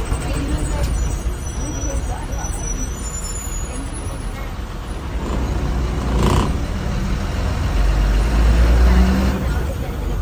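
A bus's diesel engine heard from the driver's cabin, running with a low rumble that grows louder from about five seconds in as the bus pulls away and gathers speed. A short burst of hiss comes about six seconds in.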